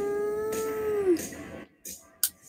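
A woman's drawn-out 'aaah', sliding up in pitch and then held steady before trailing off a little over a second in.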